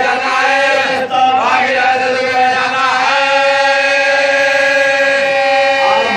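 Men's voices chanting a marsiya, a mourning elegy, in a slow melodic recitation with long drawn-out notes; from about halfway through, one note is held steadily for nearly three seconds.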